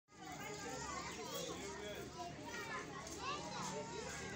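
Several voices talking and calling out over one another, many of them high-pitched children's voices.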